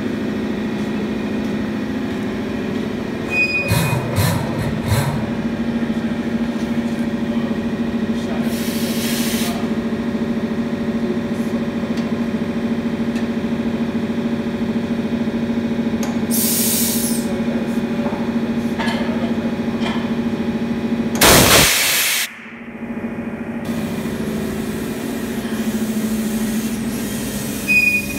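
A steady mechanical hum throughout, with two short hisses of compressed air. About three-quarters of the way through comes a loud one-second blast from a bead blaster's air tank, which seats the bead of a tyre stretched onto a wheel far wider than it is made for.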